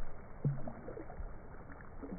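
Pool water sloshing and lapping around people wading in it, with one brief low sound about half a second in.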